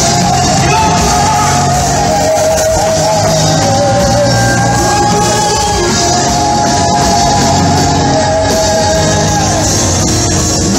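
Live contemporary worship music: a band playing in a large hall, with singers holding long notes.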